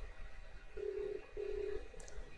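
Telephone ringback tone: a steady low tone in two short pulses close together, the double-ring cadence of an Australian phone line, meaning the number called is ringing.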